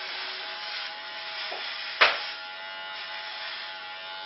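Electric hair clippers buzzing steadily as they shave a head down close to the scalp, with one sharp click about two seconds in.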